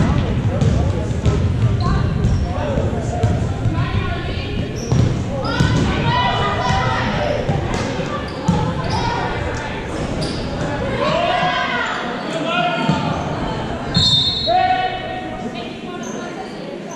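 A basketball bouncing on a hardwood gym floor, with voices calling out during play, all echoing in a large gymnasium.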